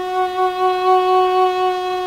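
Swamp kauri wood double-chambered drone flute (Native American style) sounding one long, steady held note on its root, F#.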